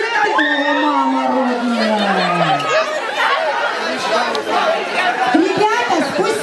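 A crowd of teenagers chattering and calling out all at once, with one long tone sliding downward in pitch over the first two to three seconds.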